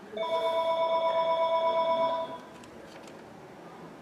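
A telephone ringing once, a steady high electronic ring lasting about two seconds with a fast flutter, then cutting off.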